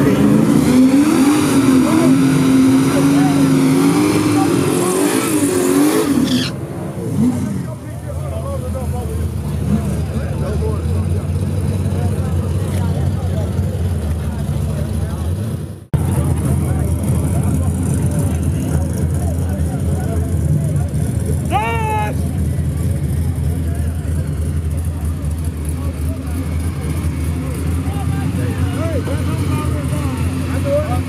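Drag-racing car engines running at a drag strip with crowd voices. A loud, wavering engine sound for the first six seconds gives way to a steadier, lower drone. The sound cuts abruptly about halfway.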